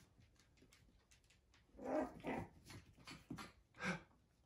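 Puppies at play making small growls and yips in short bursts, starting about two seconds in and coming again near the end.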